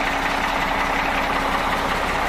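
Heavy diesel truck engine idling steadily, with a low steady hum that fades out about one and a half seconds in.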